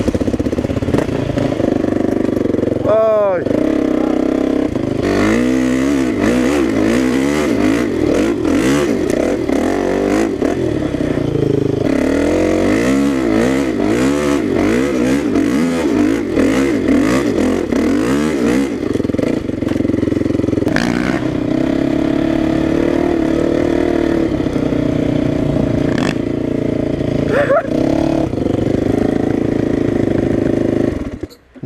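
Dirt bike engine running under load on a rough off-road trail. The revs climb sharply about three seconds in, then rise and fall rapidly with constant throttle changes for much of the ride before settling to a steadier note near the end.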